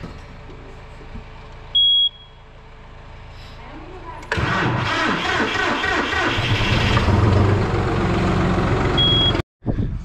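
Tractor's warning beep sounds once, then about four seconds in the engine cranks and starts from cold and runs loudly. A second, shorter beep comes near the end.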